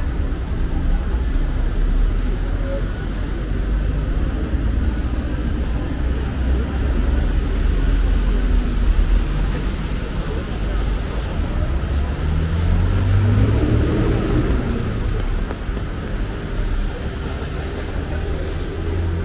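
City street traffic on a wet night: a steady low rumble of vehicles with a hiss over it. One vehicle passes louder about two-thirds of the way in.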